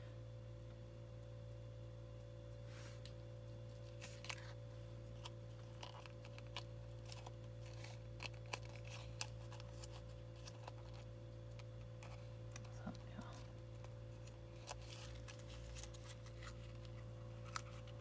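Scattered faint clicks and light rustles of a small metal key charm and paper pieces being handled, over a steady low electrical hum.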